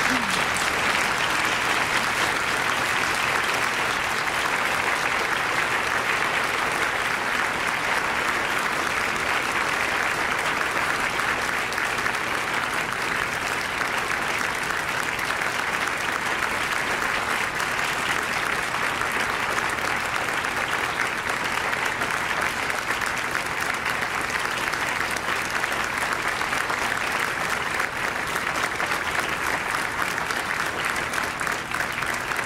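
A large audience applauding: many people clapping together in one long, steady ovation that does not let up.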